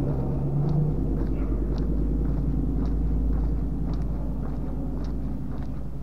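A car passing on the street, its low engine and tyre rumble swelling to a peak around the middle and then easing off.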